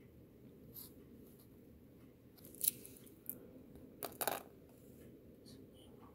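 Faint rustles and small clicks of hands handling small glass beads, over a low steady room hum. The loudest is a quick pair of clicks about four seconds in.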